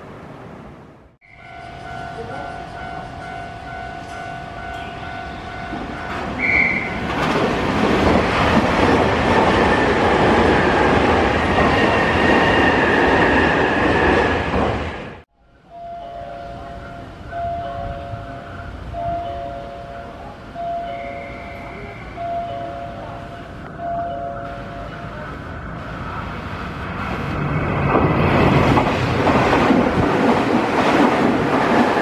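A Nankai commuter train runs over the level crossing with the crossing bell ringing. After a cut, a two-tone station chime alternates, warning of a train passing through, and near the end another Nankai train rushes through the platform at speed.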